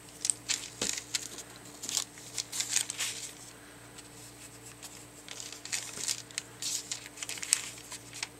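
Damp rice paper being torn by hand along a wetted line around a printed image: soft crinkly tearing in two spells of small crackles, with a short pause in the middle. Wetting the paper first gives a soft, torn edge rather than a hard cut.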